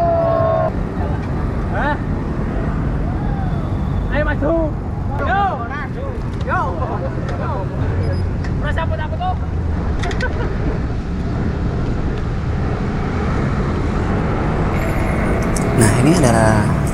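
Steady wind noise on the microphone of a camera riding a bicycle, over city road traffic, with indistinct voices and short calls about four to seven seconds in.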